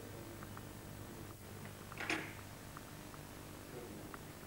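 A low steady hum with a few faint ticks and one brief rustle about two seconds in.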